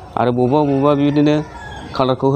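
A man's voice holding one long vowel at a steady, low pitch for about a second and a half, a drawn-out hesitation sound between words.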